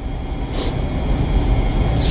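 Steady low rumble with a faint hiss: background room noise picked up by the microphone, with no speech.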